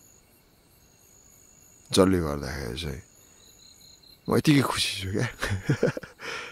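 Faint, steady high-pitched chirring of crickets in the background, broken by a drawn-out voice sound about two seconds in and by speaking in the last two seconds.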